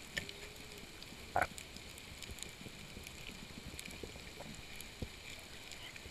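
Underwater reef ambience: a steady low rumble with scattered faint clicks and crackles, and one short, louder pop about a second and a half in.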